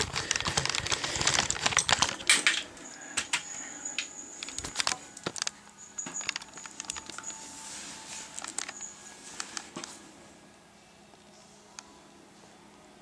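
Close handling noise on a phone's microphone: a dense run of rustling and clicking for about the first two and a half seconds, then scattered taps and clicks that thin out toward the end.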